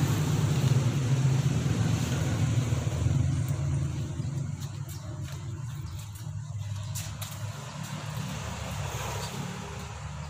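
A motorbike engine passing on the road, its steady low hum slowly fading as it moves away.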